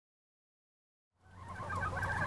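Silence for just over a second, then chickens clucking faintly over a low steady hum.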